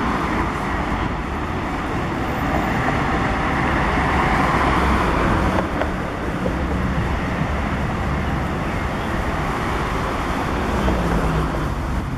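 Road traffic noise on a city street: cars and engines passing in a steady hum, a little louder about four seconds in, with no siren standing out.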